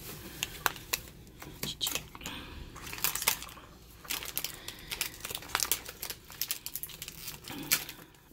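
Crinkly wrapping of a Pikmi Pops toy packet being handled and pulled open: irregular crackles and clicks throughout.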